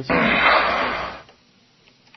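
A long, breathy exhale close to a microphone, loud at first and fading out after about a second.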